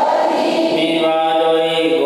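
Buddhist chanting: voices intoning long, held notes in a steady drone, stepping to a new pitch about every second.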